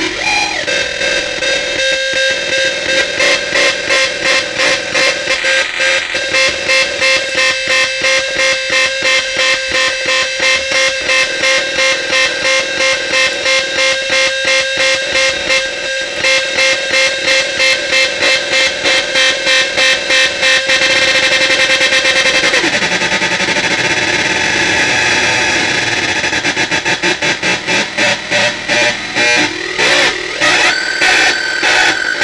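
Mega 4093 NAND-gate drone synth, its 4093 chip driven by four 555 timer oscillators, playing a harsh, buzzing drone chopped into a pulse about twice a second. About two-thirds of the way through, the pulsing stops and the tone shifts with a pitch glide as the knobs are turned. Near the end it breaks back into quicker pulsing.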